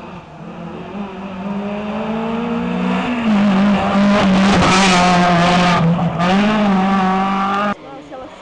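Peugeot 206 rally car's engine at full throttle, growing louder as the car approaches and passes close by. The engine pitch dips and recovers twice, and the sound cuts off suddenly near the end.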